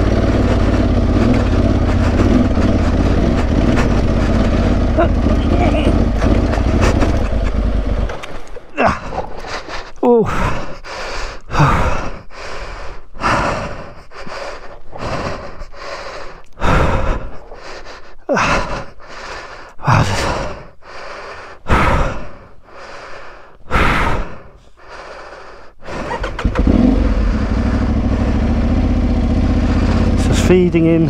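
Aprilia Tuareg 660 parallel-twin engine running on a rocky climb, then falling silent about eight seconds in. For most of the rest there are heavy breaths, about one a second, of the exhausted rider panting into the helmet microphone, before the engine runs again near the end.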